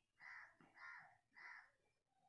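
Three faint caws from a bird, evenly spaced a little over half a second apart.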